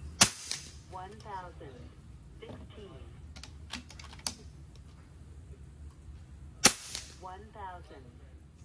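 Two shots from an FX Impact .30 PCP air rifle firing 44-grain slugs at about 1,020 fps: sharp cracks, one right at the start and one about six and a half seconds later. In between come lighter clicks of the side lever being cycled to chamber the next slug.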